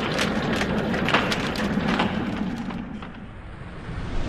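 Sound effects of an animated logo intro: a rumbling whoosh laced with many quick clicks and clacks, thinning out near the end as a deep bass swell begins.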